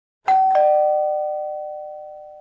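Two-note ding-dong doorbell chime: a higher note, then a lower one about a quarter second later, both ringing on and fading away slowly.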